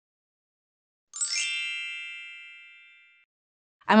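Bright chime sting for an animated logo: a quick sparkling flourish about a second in, then several ringing tones fading out over about two seconds.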